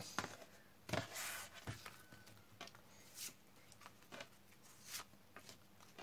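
Tarot cards being handled and slid across a wooden tabletop: a few soft brushing and tapping sounds, the loudest about a second in.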